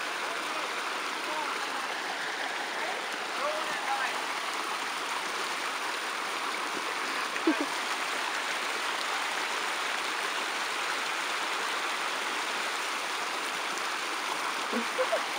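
Creek water rushing and splashing steadily over a small cascade of rocks and a pile of sticks.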